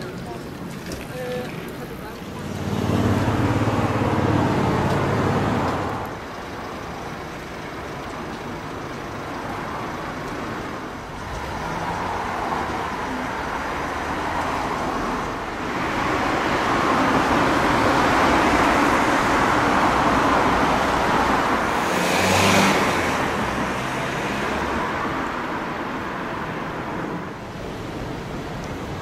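Road traffic passing. A vehicle with a low engine drone goes by about three to six seconds in, and a longer pass builds from about sixteen seconds, loudest a little after twenty-two seconds, then fades.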